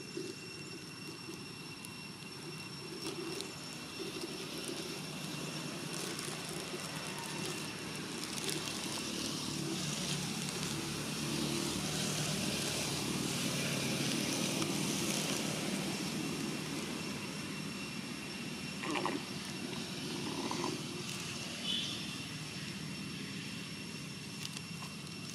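Distant engine noise, swelling to a peak about halfway through and easing off again, over a steady high whine. A few short, sharp sounds near the end.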